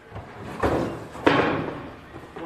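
Knocks and scraping as a cardboard box is pulled out of a steel kiln chamber, with two loud bumps about half a second and a second and a quarter in.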